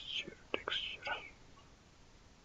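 Soft whispered muttering for about the first second, then only faint background hiss.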